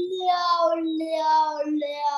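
A voice singing or humming a wordless tune: held notes that change about every half second over a low note that slowly sinks in pitch.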